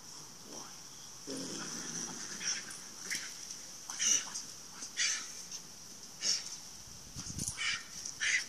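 A dog barking in short, sharp bursts, roughly one a second, over a steady high-pitched hiss.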